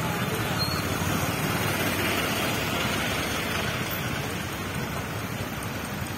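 Steady traffic noise from a jam of slow-moving and idling trucks and cars, with indistinct voices in the background.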